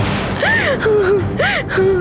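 A woman crying aloud: a sharp breath, then two rising-and-falling wails about a second apart, each trailing into a lower drawn-out sob.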